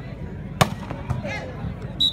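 A volleyball struck hard by a player's hand: one sharp smack about half a second in, followed by a couple of lighter knocks, over a steady murmur of spectators.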